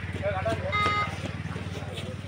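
Scattered shouts and calls from players and spectators at an outdoor kabaddi match, over a steady low hum. A short high tone sounds a little under a second in.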